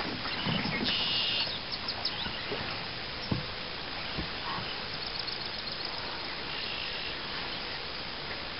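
Quiet open-water ambience with faint bird chirps, plus a few soft ticks and short high buzzes.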